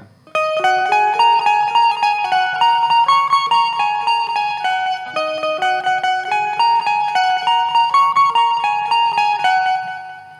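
Indian banjo (bulbul tarang) played in a fast, continuous run of plucked notes: the rippling jal tarang interlude of the melody, repeated. It begins just after the start and ends with the last note ringing out near the end.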